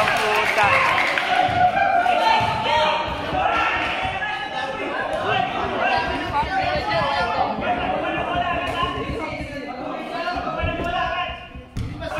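Many voices talking at once in a large gym hall, indistinct chatter of spectators and players, with a few faint thuds.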